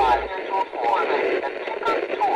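Indistinct voices with a narrow, tinny, radio-like sound, broken by a few sharp clicks; a low hum drops out just after the start.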